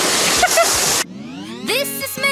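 Rushing, splashing water and wind noise from a log flume boat running along its channel, with a brief laughing squeal, cut off abruptly about halfway through. A rising sweep then leads into pop music near the end.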